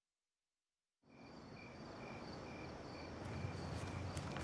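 Silence, then about a second in a night ambience fades in: a cricket chirping steadily, about two chirps a second, over a low background hum.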